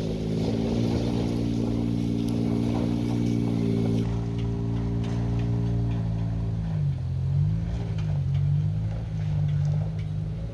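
Nissan Xterra's engine working steadily under load on a steep off-road hill climb, its revs dipping and picking back up twice about seven seconds in.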